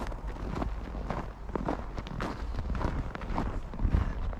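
Footsteps crunching in trampled snow at a walking pace, about two steps a second, over a steady low rumble.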